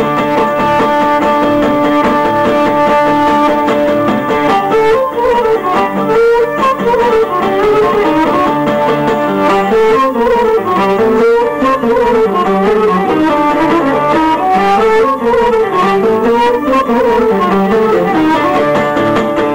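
Cretan lyra playing a winding, sliding melody over strummed acoustic guitar accompaniment. The lyra starts on held notes and moves into the running melody about four seconds in.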